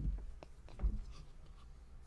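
A lull in talk: quiet room tone with a few soft, low thumps and faint small ticks, like handling and table noise.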